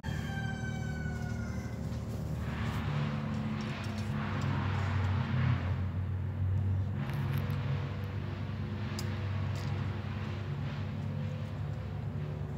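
A steady low motor hum, like a vehicle engine running, with swells of rushing noise about three seconds in and again about seven seconds in. A falling tone sounds over the first two seconds.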